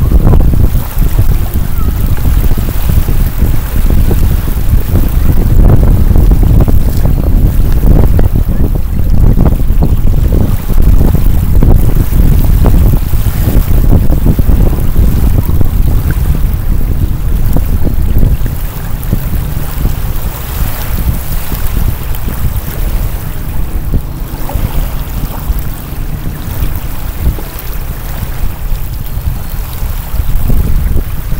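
Wind buffeting the microphone, a loud low rumble, over small lake waves lapping at the shore. The wind eases a little about two-thirds of the way through.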